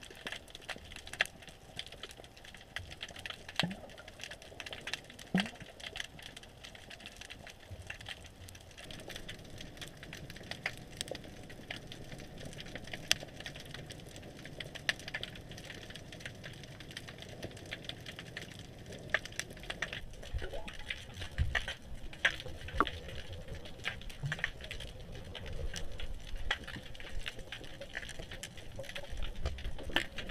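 Underwater ambient sound: a steady hiss scattered with irregular sharp clicks and crackles, with a low rumble of water movement that grows louder in the second half.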